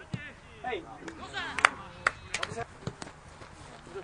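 Voices calling out across an outdoor football match, with several sharp knocks in the middle, the loudest about a second and a half in.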